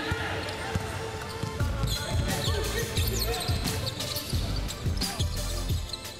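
Basketball bouncing on a hardwood court, a run of low thuds about three a second, with short sneaker squeaks.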